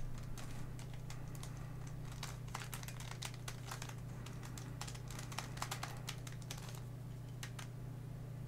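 Redi Cube twisty puzzle being turned by hand: its plastic corner pieces click and clack in quick, irregular runs as the corners are rotated. A steady low hum runs underneath.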